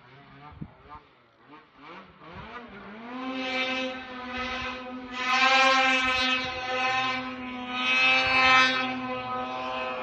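Snowmobile engine running at high revs. It is faint and wavering at first, then grows much louder from about three seconds in as the machine comes closer, holding a steady pitch with swells in loudness.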